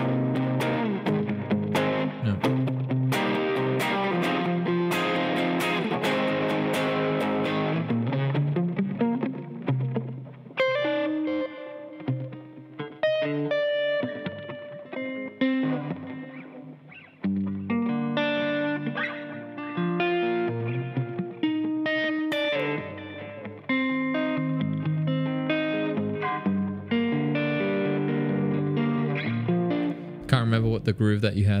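Fender Telecaster electric guitar played through an amp: strummed chords for about the first eight seconds, then single picked notes and broken chords for the rest.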